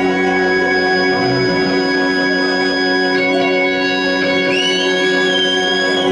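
A live rock band playing an instrumental passage: a held, organ-like chord sustains, with no drum hits, and a high lead line slides up and wavers about four and a half seconds in.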